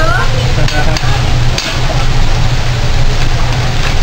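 Vegetables and onion sizzling on a hot teppanyaki griddle over a steady low hum, with a few sharp clicks about a second in and again half a second later.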